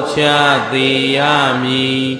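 A Buddhist monk chanting through a microphone in a drawn-out, intoning male voice. He holds long, nearly level notes, with a short dip in pitch about halfway through.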